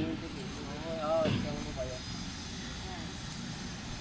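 A man's voice speaking briefly about a second in, then mostly pausing, over a steady low background rumble.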